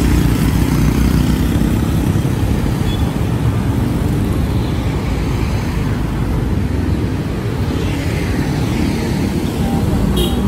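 Steady low rumble of road noise from a vehicle moving through city traffic.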